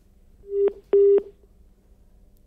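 Two short telephone-line beeps on the reporter's phone link, about half a second apart, the first swelling in and the second starting abruptly. The phone connection to the reporter has failed.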